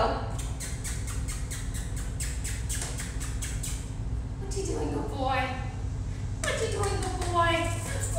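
A woman's voice in high, sing-song, untranscribed calls in the second half, over a run of quick light clicks and a steady low hum.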